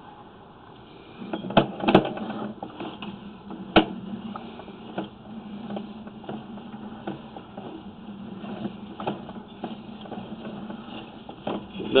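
Sewer inspection camera cable being pulled back out of the line: from about a second in, a steady hum with scattered clicks and knocks as the push cable runs back.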